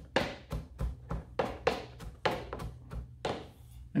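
Chef's knife mincing sliced ginger on a chopping board, the tip kept on the board while the back of the blade is lifted and brought down again and again. This gives a run of about a dozen quick knocks, roughly three a second, which stops a little before the end.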